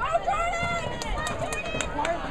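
Raised voices of spectators and players calling out during a soccer match, with a few sharp knocks or claps in the second half.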